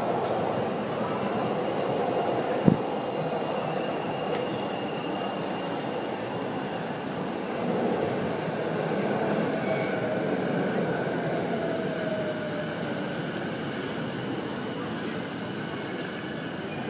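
A train running, its wheels squealing in several long, steady high tones over a constant rolling noise. A single sharp knock comes about three seconds in.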